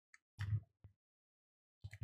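Faint, short computer mouse clicks, a few scattered ones, the louder about half a second in and near the end.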